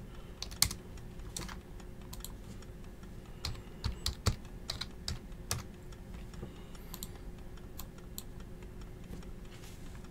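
Faint typing on a computer keyboard: scattered keystroke clicks, bunched into a quick run about four to five seconds in, over a low steady hum.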